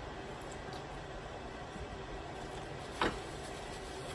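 Steady low room hiss, with one short, sharp click about three seconds in.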